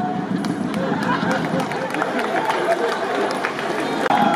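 Theatre audience laughing and chattering, with scattered sharp knocks from barefoot actors running and scuffling on the stage.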